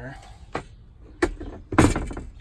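Long steel drawer slide being set down into place on the van floor, knocking against its metal mounting bracket: two light knocks, then a louder metallic clank near the end.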